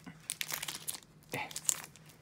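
Foil wrapper of a Pokémon card booster pack crinkling in the hands as it is opened and the cards are slid out, a quick run of crackles.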